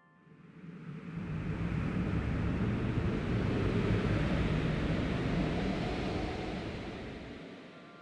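A low rumbling swell of noise that builds over the first few seconds and fades away near the end.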